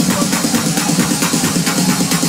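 Loud techno over a club tent's sound system, with a fast, steady beat; little of the deep bass comes through.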